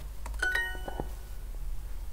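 Duolingo's correct-answer chime: two quick rising bell-like notes about half a second in, ringing briefly. It is the signal that the submitted answer was accepted.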